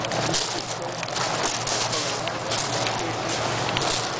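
Steady, fairly loud noise of power-plant machinery with a low hum, and footsteps crunching on gravel now and then.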